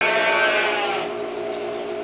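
A lamb bleating: one drawn-out call that starts suddenly and fades over about a second.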